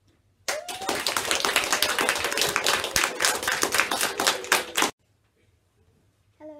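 Audience applauding: a dense patter of clapping that starts abruptly about half a second in and cuts off suddenly after about four seconds.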